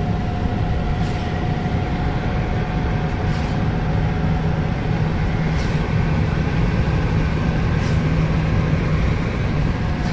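A car's engine and tyres running steadily on a wet road, heard from inside the cabin: a constant road drone with a low steady hum.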